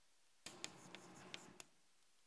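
Chalk writing on a blackboard: about a second of scratching, with several sharp taps of the chalk against the board, starting about half a second in.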